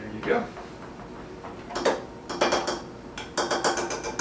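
Quick clinks and rattles of lab glassware and utensils, coming in two bursts in the second half, as a funnel is handled in the neck of a glass Erlenmeyer flask.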